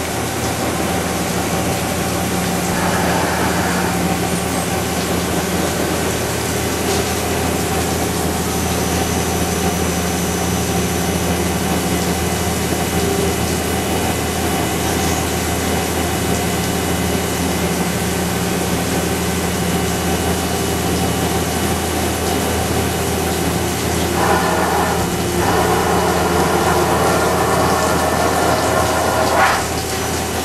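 Leadwell MCH500D horizontal machining center running a machining cycle: a steady mechanical hum with several held tones. A higher, brighter sound joins briefly a few seconds in and again for several seconds near the end, with coolant flowing over the work.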